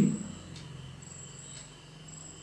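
A faint, high, steady insect trill, coming and going in short stretches, likely a cricket, under the room's quiet background.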